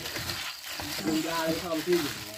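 Plastic bag crinkling and rustling as a hand gloved in it squeezes and kneads minced banana blossom and chicken blood in an aluminium bowl, a steady wet crackle made of many small crackles.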